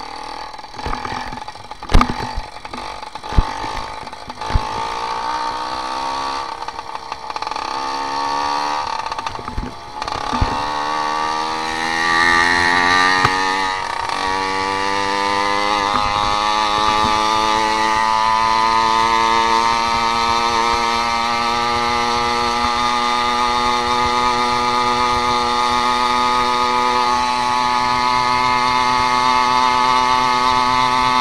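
Motorized bicycle's small two-stroke engine pulling the bike up to speed. Its pitch climbs in a few steps, dipping between them, then settles into a steady high drone that slowly creeps higher. A few sharp knocks come in the first seconds.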